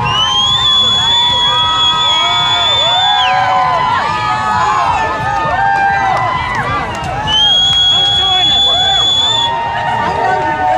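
Street crowd cheering and shouting, many voices overlapping. Over it, a high steady whistle blast of about three seconds near the start and a second, shorter one near the end.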